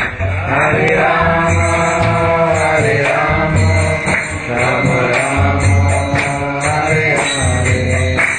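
Vaishnava devotional kirtan: a mantra sung in a continuous chant over a regular low beat and pitched instrumental accompaniment.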